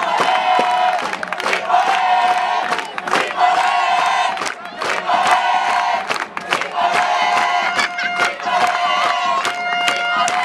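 Crowd of spectators cheering and yelling at a youth football match, with long held shouts and sharp claps or bangs throughout, celebrating a goal.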